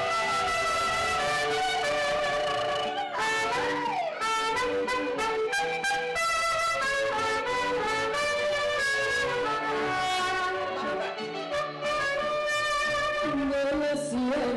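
Mariachi trumpet playing a melody live over recorded mariachi backing music from a small amplifier, in a run of held notes. Near the end a woman's voice comes in singing.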